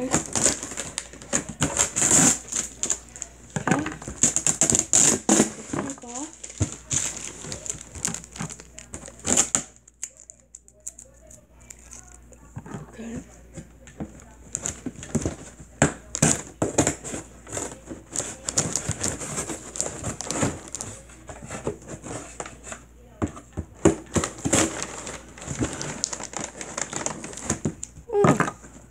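Scissors cutting and tearing clear tape on a cardboard shipping box, with the cardboard flaps scraping and crinkling as the box is worked open. The sounds come in irregular bursts of crackling and clicking, with a quieter pause about ten seconds in.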